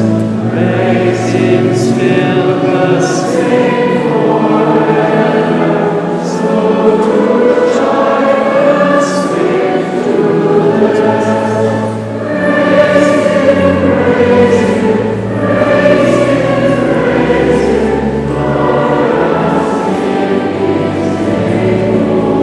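Choir singing a hymn in a large stone cathedral, the recessional at the close of Mass, carried on without a break.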